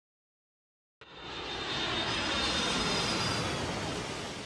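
Jet airplane flyby sound effect: engine noise with a thin high whine that starts suddenly about a second in, swells and then fades away.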